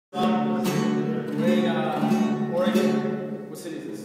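Acoustic guitar strummed in chords, with several sharp strokes about a second apart, each left ringing. It is heard in the echo of a concrete silo.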